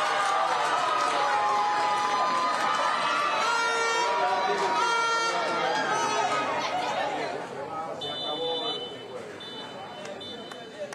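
Many voices shouting and cheering at once, loud for about seven seconds, then dying down.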